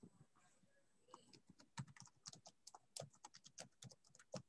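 Faint typing on a computer keyboard: irregular key clicks, several a second, starting about a second in.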